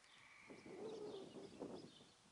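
Near silence with a faint distant bird call: a low, held note about halfway through.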